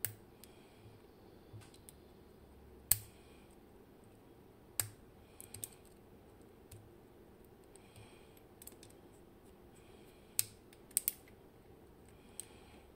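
Scattered sharp metallic clicks of a steel pick tool against the small brass parts of a Bowley door lock cylinder being taken apart. The clicks come irregularly: a loud one about three seconds in, a few around five seconds, and a quick run near the end.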